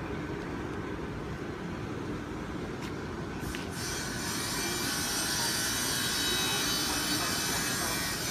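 The electric blower fans that keep a yard full of inflatable Christmas decorations inflated, running as a steady whir; about halfway through a higher hiss and whine join in and the sound grows a little louder.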